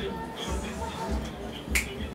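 A quiet backing beat of low thumps, about one every 0.6 seconds, with a single sharp finger snap near the end.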